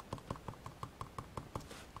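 Stylus tool dabbing dye ink onto glossy cardstock in quick, light, even taps, about five or six a second, with a brief soft brushing hiss near the end.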